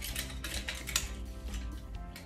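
Nunchaku swung and caught, its chain clinking in a run of small irregular clicks over steady background music.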